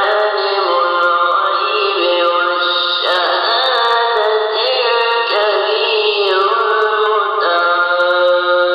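Melodic Quran recitation by a single voice, in long notes that are held and glide between pitches.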